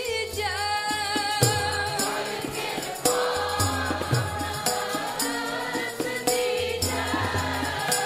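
Sikh kirtan: women's voices singing a hymn together to harmonium, with tabla playing a beat of deep bass strokes and lighter taps.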